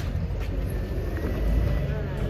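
Outdoor ambience: a steady low rumble of vehicle traffic, with people talking.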